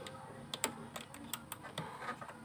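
Several light, sharp plastic clicks and taps in quick succession as the 15 A EFI blade fuse and a plastic fuse puller are worked back into the engine-bay fuse box, refitting the fuse after an ECU reset.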